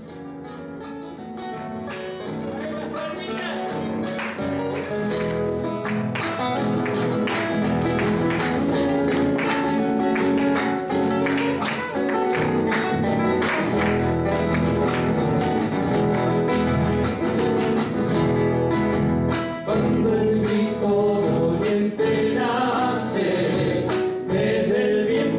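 Two acoustic guitars playing an Argentine folk song introduction live, fading in over the first few seconds; near the end, men's voices come in singing in harmony.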